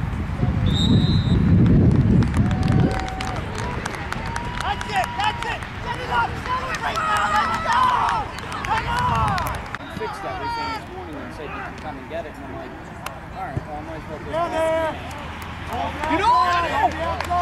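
Scattered, mostly indistinct shouts and calls from coaches and spectators along a football sideline, coming in bursts. A low rumble fills the first few seconds.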